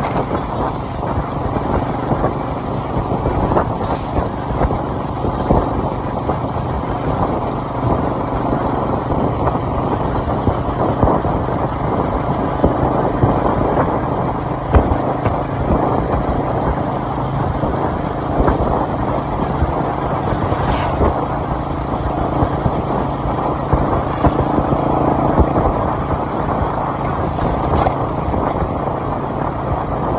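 Small motorcycle's engine running steadily at cruising speed, heard from the rider's seat, with a steady low hum under a rushing road-and-wind noise.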